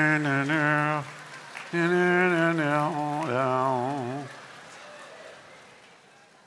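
A man's voice doing a vocal drum roll: three drawn-out trilled tones of about a second each, the last one wavering, then fading out about four seconds in.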